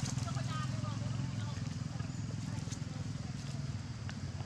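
Baby macaque giving a quick series of short, high, squeaky cries in the first second, which then fade out. A steady low hum runs underneath.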